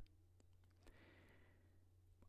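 Near silence, with a faint breath from the narrator about a second in.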